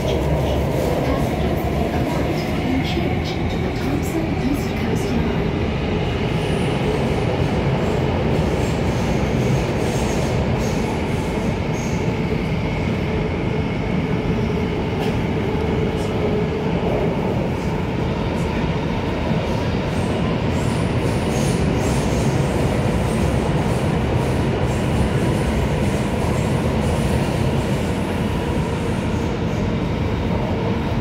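SBS Transit C951 Downtown Line metro train running, heard from inside the passenger carriage: a steady, loud rumble of wheels and running gear with a few steady whining tones over it.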